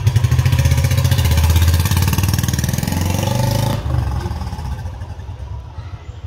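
Royal Enfield Classic 350 single-cylinder engine pulling away under throttle through a 2-in-1 adjustable silencer set to its low 'Indori-type' filtered sound. The exhaust note is loudest in the first two seconds and falls away after about four seconds as the bike rides off.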